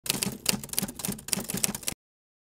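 Rapid typing on a keyboard: a fast, uneven run of key clicks that cuts off suddenly near the end.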